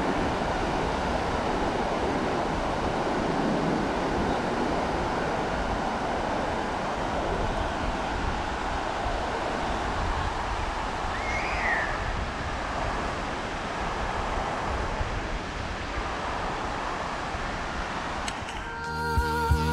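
Ocean surf breaking on a sandy beach, a steady wash of waves, with wind rumbling on the microphone.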